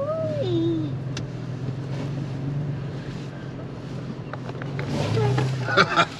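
Toyota FJ Cruiser's V6 engine running low and steady in four-wheel drive on a rough dirt track, heard from inside the cabin. In the first second a short voice-like call slides down in pitch.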